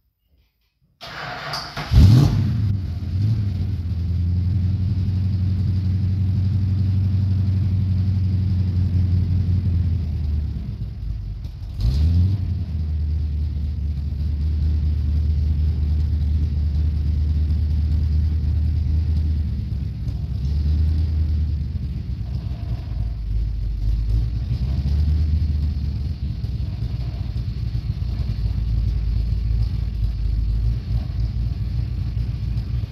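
Stock 1969 Dodge Coronet 500's 440 V8 cold-started: it cranks briefly and catches about two seconds in, then runs at a held high idle because the engine is still cold. About ten seconds in the engine sags, then picks up again with a sharp burst and settles back into a steady fast idle.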